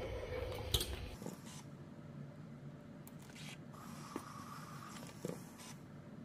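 Faint handling sounds of a clothes iron and fabric: a low rumble that stops about a second in, with a sharp knock just before it, then light rustles and ticks as a fabric edge is folded by hand.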